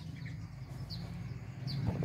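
A few faint, short bird chirps over a low steady hum.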